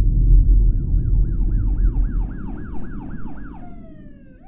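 Emergency-vehicle siren in a fast yelp pattern, about three rising sweeps a second, over a low rumble that fades away. Near the end the sweeps stop and the pitch glides down.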